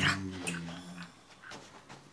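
A man's voice holding a long, wavering wail or sung note that dies away about a second in.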